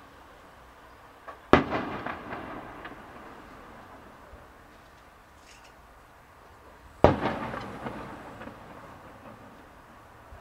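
Two distant aerial firework shells bursting, about five and a half seconds apart: each is a sharp boom trailing off into a rumbling echo with scattered crackles over a second or so.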